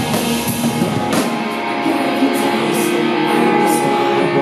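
Live punk rock band playing: electric guitars strummed over drums and cymbals. About a second in the low end drops out, leaving the guitars ringing over regular cymbal hits.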